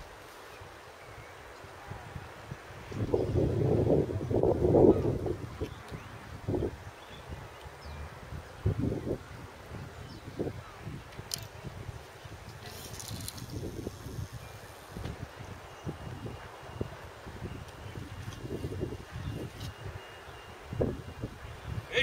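Wind buffeting the microphone in gusts, strongest about three to five seconds in, then coming and going in shorter puffs.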